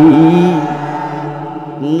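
A man's voice in the chanted, sing-song delivery of a Bangla waz sermon: a long drawn-out note that fades away, then a new loud phrase starting near the end.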